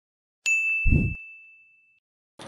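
A single bright ding sound effect: a high ringing tone that strikes suddenly about half a second in and slowly fades, with a short deep thump just under a second in.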